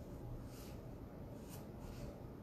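Quiet room tone with a low steady hum and a few faint, brief ticks or rustles, about three in two seconds.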